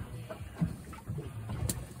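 Mesh net bag being handled and set down on a boat's gunwale, with one sharp click near the end, over a low steady hum.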